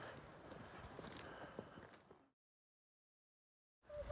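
Faint footsteps on a gravel and rock trail, a few soft scattered steps, then the sound cuts out to complete silence a little past halfway.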